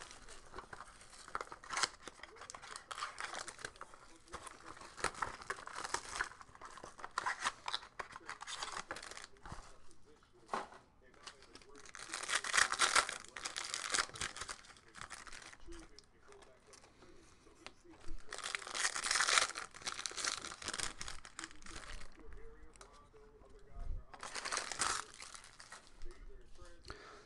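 Plastic shrink wrap and a foil wrapper on a baseball card box being torn open and crumpled by hand. It is an irregular crinkling, with louder bursts of tearing about halfway through and again near the end.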